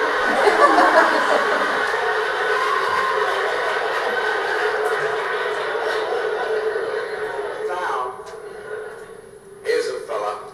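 Thin, muffled voices and chuckling from a video clip played back through a small loudspeaker and picked up in the room; the sound eases off and drops about eight seconds in.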